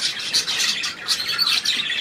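Budgerigars chattering: a busy run of short, high calls and brief warbling glides.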